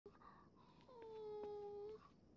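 A dog whining: a short higher whimper, then a longer held whine that dips slightly in pitch and holds steady.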